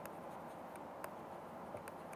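Faint scratching and light taps of a stylus writing on a pen tablet, a few soft clicks over a steady low hiss.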